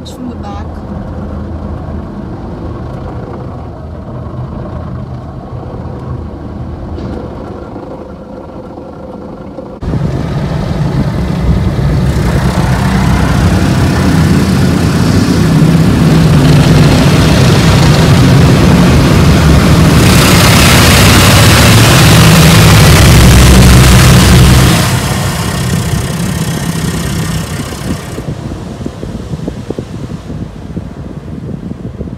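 Automatic car wash machinery heard from inside the car: the spinning microfiber cloth brushes and water working over the body and windows. A steady wash of noise with a low hum turns suddenly much louder about ten seconds in, builds, then drops back about five seconds before the end.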